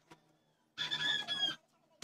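A chicken calls once, a short call of under a second about midway through.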